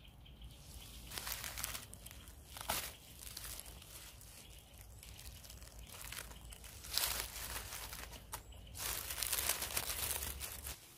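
Dry fallen leaves rustling and crackling as a hand pushes through leaf litter and grips a mushroom at ground level. The crackles come in irregular bursts, louder about seven seconds in and again near the end.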